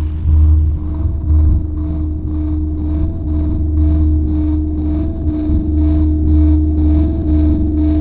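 Harsh noise / drone music: a dense, loud low rumble under a steady droning tone, with a faint high pulsing that repeats about three times a second.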